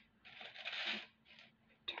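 Soft rustle of a knit sleeve brushing close past as an arm reaches across the worktable, a hiss lasting under a second, followed by a couple of faint light ticks.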